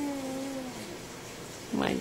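A baby cooing: one long, steady vocal sound that falls slightly in pitch and fades out under a second in.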